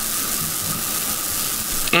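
Steady hiss of background noise in a pause between speech, even and unchanging, with a voice starting again right at the end.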